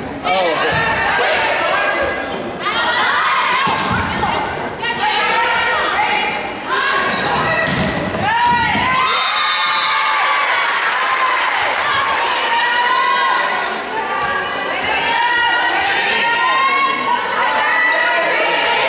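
Volleyball being struck several times with sharp thuds in the first half, under many voices of spectators and players shouting and cheering, the cheering growing fuller after about halfway.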